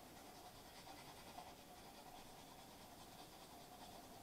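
Faint, scratchy scrubbing of a toothbrush brushing teeth.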